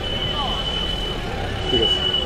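Background voices and general crowd noise, with a thin, steady high-pitched whine throughout.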